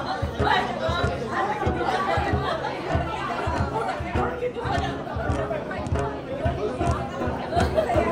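Many people chatting at once in a room full of guests, overlapping conversations with no single clear voice, over background music with a repeating low beat.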